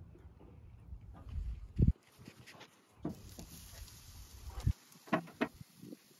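A metal barrel charcoal grill handled while racks of ribs go onto its grate: a low thump about two seconds in and a few short knocks near the end, over a faint low rumble.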